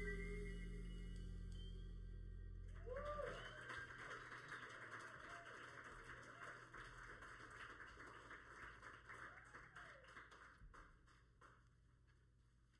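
A jazz ensemble's final chord ringing out and fading away over the first few seconds, followed by a faint, dense crackle that slowly dies down.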